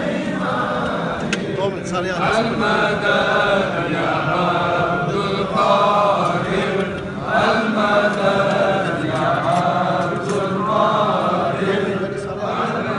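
A group of men chanting together in unison, a Sufi devotional chant (dhikr) carried by many voices without a break.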